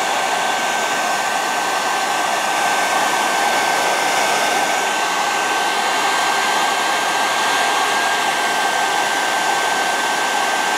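A 1970s–80s-era handheld blow dryer running steadily, blowing hot air at close range, with a thin, steady high whine over the rush of air.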